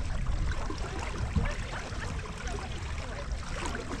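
Water rushing and sloshing along a small sailing dinghy's hull as it sails, with wind rumbling on the microphone. A single knock sounds about a second and a half in.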